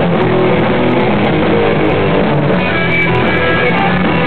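Hardcore punk band playing live: loud, continuous guitar-driven rock with no break.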